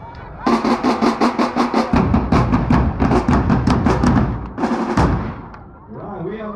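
A marching drumline with silver bass drums plays a fast, loud beat of about six strokes a second, starting about half a second in. A deeper booming layer joins about two seconds in. The drumming stops short near the end with one final hit.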